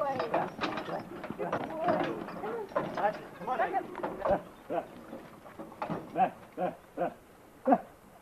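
Indistinct voices talking, with several short calls in the second half.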